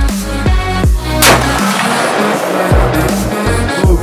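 Electronic background music with a steady beat and repeated falling bass notes runs throughout. About a second in, a single 8mm Remington Magnum rifle shot is fired over it, followed by a fading echo.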